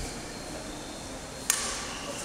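A single sharp crack of a badminton racket striking a shuttlecock about one and a half seconds in, over steady hall room noise.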